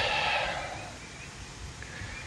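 The drawn-out end of a man's word fading out in the first second, then only faint outdoor background.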